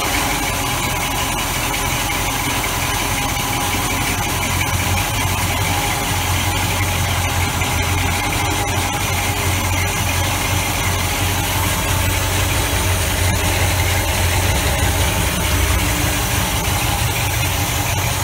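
A yacht's small inboard engine idling steadily just after starting, heard close up in the open engine compartment.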